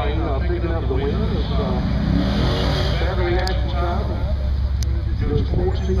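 Low, steady rumble of cars idling in a drag strip's staging lanes, under voices talking.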